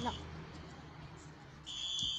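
Fire alarm sounder beeping with a high, steady piezo tone, faint and barely audible. It sounds half-second beeps in groups, the temporal-three evacuation pattern: one beep ends just after the start, a pause of about a second and a half follows, and the next beep begins near the end.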